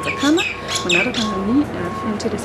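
A woman talking, with two or three short, high squeaky calls about half a second and a second in.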